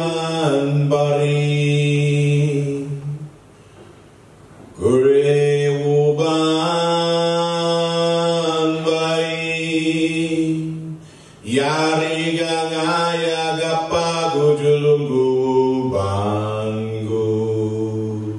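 A man chanting a song into a microphone in three long sustained phrases, pausing briefly for breath between them, his voice stepping down in pitch through each phrase.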